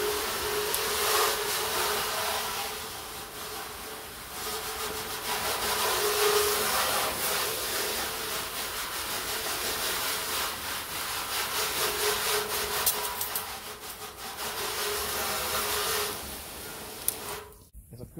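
Water from a garden-hose spray nozzle hitting a painted car fender panel: a steady hiss of spray that cuts off about a second before the end.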